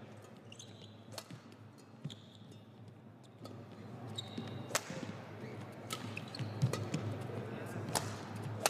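Badminton rally: rackets striking the feather shuttlecock with sharp cracks, about five of them at irregular spacing, the loudest a little past the middle.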